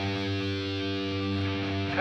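Music: a held electric guitar chord ringing steadily, with no drums or vocal yet.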